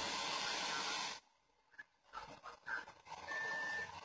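Handheld butane torch burning with a steady hiss as it heats a dab rig's nail. The hiss stops a little over a second in, then comes back in short bursts and a steady stretch, with a thin high whistle near the end.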